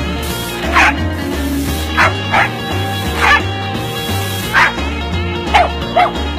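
A dog barking six short times at uneven intervals of about half a second to a second and a half, over background music with a steady repeating bass line.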